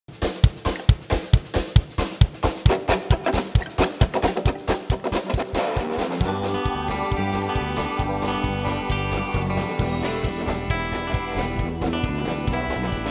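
Live rock band's instrumental intro: the drum kit plays a steady beat of about three hits a second on its own, then electric bass, electric guitar and keyboard come in together about halfway through.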